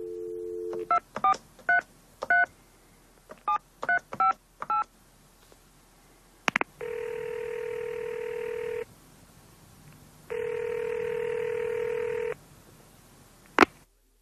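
A telephone call is placed on a touch-tone phone. The dial tone stops and the keypad beeps in two quick runs of about four digits each. After a click, the ringing tone sounds twice, about two seconds each, meaning the call is ringing through, and a click near the end marks the line being picked up.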